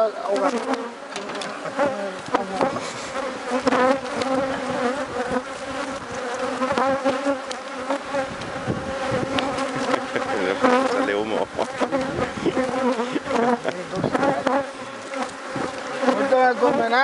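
Honeybees buzzing around an opened hive: a dense, steady hum, with single bees' pitch rising and falling as they fly close past. Scattered clicks and knocks of the wooden hive frames being handled run through it.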